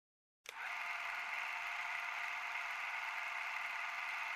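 A steady hiss that starts with a click about half a second in and then holds level.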